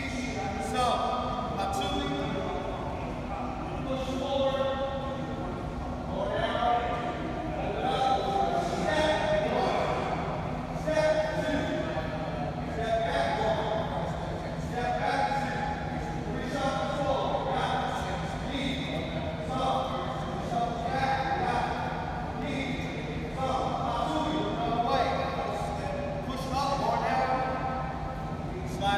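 Indistinct voices talking, echoing in a large gymnasium, with a steady low hum joining about a third of the way in.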